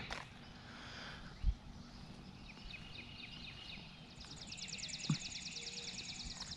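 Songbirds calling faintly in the morning air: scattered high chirps, then a rapid, even trill of high notes starting about four seconds in. A single low thump comes about one and a half seconds in.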